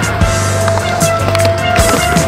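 Skateboard wheels rolling on concrete, with a few sharp clacks of the board, about three in two seconds, over a music track with steady held tones.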